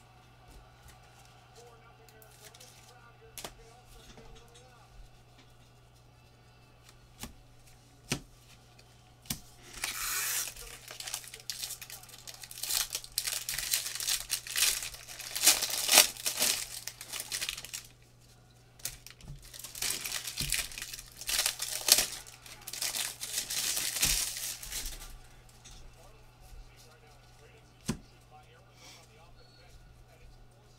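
Foil wrappers of 2019 Bowman Draft Super Jumbo trading-card packs being torn open and crinkled by gloved hands, in two spells of about eight and six seconds after a quieter start with a few light clicks. A steady low hum runs underneath.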